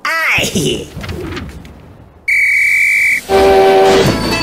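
Cartoon train whistles: a steady, high whistle blast holds for about a second, starting a little past the middle. Near the end a lower, chord-like steam-locomotive whistle sounds.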